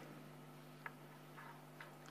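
Near silence: room tone with a faint steady hum and two faint ticks, about a second in and near the end.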